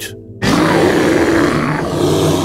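A dinosaur roar, loud and rough, starting about half a second in and lasting about two seconds.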